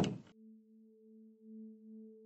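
A loud noisy burst cuts off sharply about a third of a second in, leaving a soft, steady low tone with a fainter octave above it, slowly swelling and fading in loudness like a drone.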